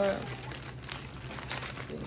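Packaging crinkling and rustling in the hands as mica powder packets are rummaged through and pulled out, a soft, irregular sound with small crackles.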